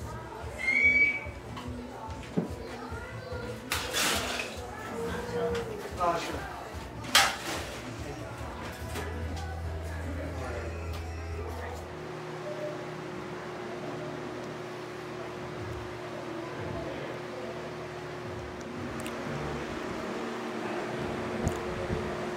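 Indistinct voices and background clatter at a reception bar, with a couple of sharp knocks or clinks. About halfway through, the sound changes to a steadier room hum.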